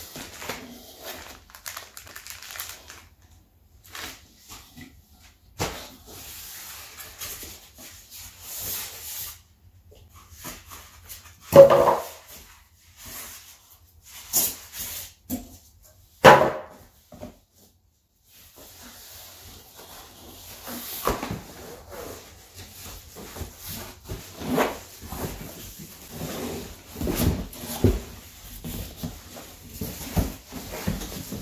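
Cardboard box and foam packing being handled: rustling and scraping, with two short, loud squeaks about twelve and sixteen seconds in, then steadier rustling and scuffing near the end as the box is lifted off the wrapped subwoofer.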